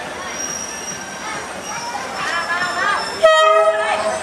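Diesel locomotive horn sounding one loud, steady blast of about a second near the end, as the train pulls into the platform. Before it, the waiting crowd's voices can be heard.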